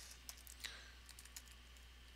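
Faint, scattered keystrokes on a computer keyboard as a short command is typed.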